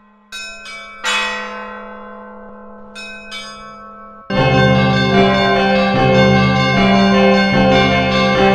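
Church bells struck about five times, in small groups, each stroke ringing on and fading. About four seconds in, loud full music with deep bass and bell tones cuts in and carries on.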